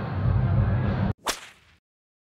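Steady background room noise with a low hum cuts off abruptly about a second in. A single short whoosh sound effect follows and fades out within half a second, a transition as the picture changes to the end card.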